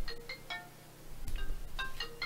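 A short electronic melody of chiming, bell-like notes, like a phone ringtone, with a brief pause in the middle.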